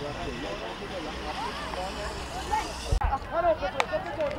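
Outdoor sports-field ambience: distant voices of players and spectators calling, over a steady low rumble. The sound changes abruptly about three seconds in, with louder voices and a sharp click.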